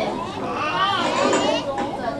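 Several children's voices talking and calling out at once, high-pitched and overlapping, loudest in the middle.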